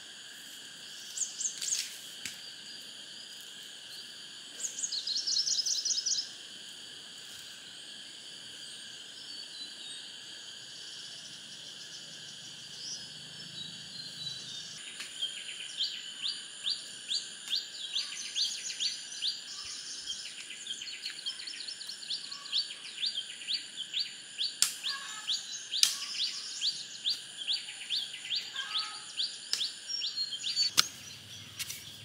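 Rural outdoor ambience: a steady high-pitched insect drone, with birds calling over it in two loud short trills early on and a run of quick repeated chirps, about two a second, through the second half. A few sharp knocks from a hoe chopping soil come in the second half.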